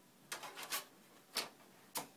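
Light clicks and clatter of a DVD being handled at a DVD player's open disc tray: a short run of small clicks about half a second in, then two sharp single clicks, one midway and one at the end.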